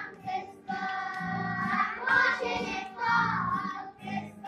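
Children's choir singing together.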